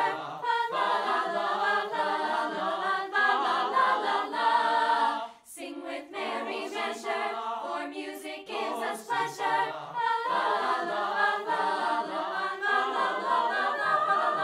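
Mixed choir of high school voices singing in harmony, with a brief break in the singing about five seconds in.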